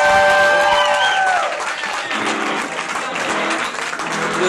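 A live indie rock band ends a song, its last held notes bending in pitch and dying away about a second and a half in, followed by audience applause.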